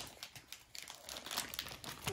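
Paper gift wrapping being crumpled and torn open by hand: a run of short crackles that grows busier and louder in the second half.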